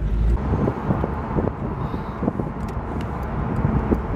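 Wind rushing over a moving convertible with its top down, buffeting the microphone in an uneven low rumble.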